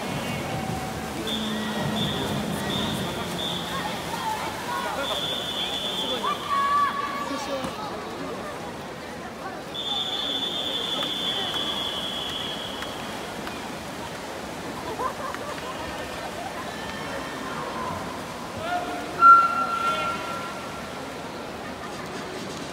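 Spectators and teammates shouting and cheering at a swimming race, with several held high-pitched shouts, over a steady din of voices and water splashing. One louder, sharper cry comes near the end.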